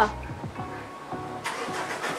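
Background music with steady held notes and repeated falling bass notes, with a man's short laugh just at the start.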